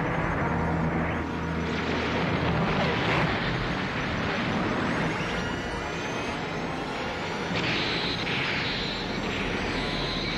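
Cartoon sound effects of an energy beam and electrical machinery: a steady, loud rushing rumble with faint rising sweeps, then bursts of electric crackling in the last couple of seconds.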